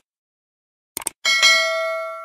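Subscribe-animation sound effects: a quick click about a second in, then a bright notification-bell chime that rings on and slowly fades.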